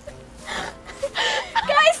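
A young woman's breathy gasps and short squeals, half laughing, as she reacts to something biting her leg.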